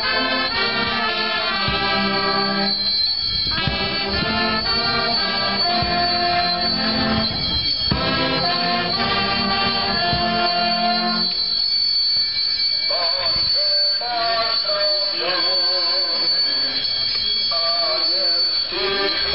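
Brass band playing held, steady chords over a bass line. About two-thirds of the way through it gives way to people singing, their pitch wavering.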